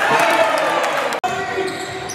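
Basketball game sounds on a wooden gym court: the ball bouncing among players' voices, with a brief dropout in the sound a little over a second in where the footage is cut.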